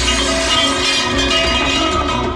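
Loud action-film background score, with a crash of shattering debris layered over it.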